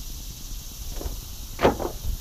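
Wind rumbling on the microphone, with one short, louder sound about one and a half seconds in.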